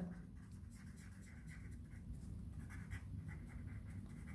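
A pen scratching faintly across paper as a word is written in a run of short strokes.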